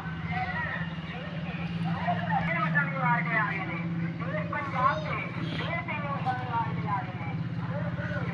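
Indistinct voices in the background over a steady low engine hum.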